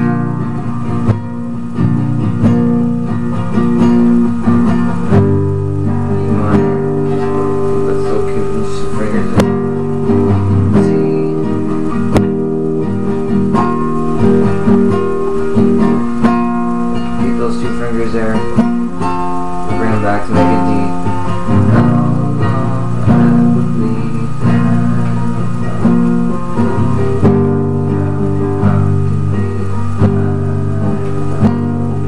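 Nylon-string classical guitar played fingerstyle in one continuous passage: plucked melody notes over bass notes and chords that ring on into each other, at an even volume.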